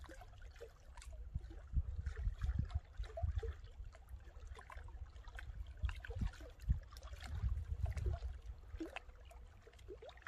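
Small waves lapping and gurgling against shoreline rocks in many short, irregular splashes, with gusts of wind buffeting the microphone in an uneven low rumble that swells twice.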